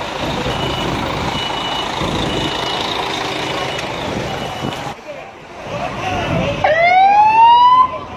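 An emergency vehicle siren winds upward in pitch for about a second and a half near the end and is the loudest sound; it cuts off suddenly. Before that comes steady street noise with a faint beep repeating.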